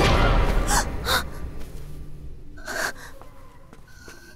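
A woman gasping as she comes to with a start: three short, sharp breaths, the last and longest near the three-second mark, while background music fades out at the start.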